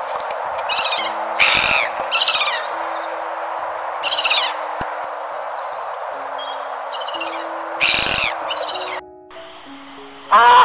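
Terns calling from a flock, about seven harsh, downward-sweeping calls, over a steady wash of surf, with soft music tones underneath. The surf and calls stop suddenly about nine seconds in.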